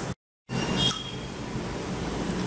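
Steady background room hiss, cut off by a brief dead silence at an edit just after the start, with a faint click and a short high tone a little under a second in.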